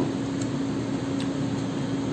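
Steady mechanical hum with one constant low tone over an even hiss, with two faint ticks about half a second and a second in.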